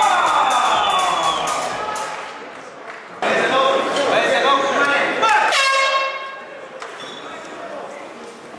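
A ring announcer's amplified voice over the hall's PA, drawing out long calls that echo in the large hall. One call falls in pitch over the first two seconds, and another runs from about three seconds in to about six seconds.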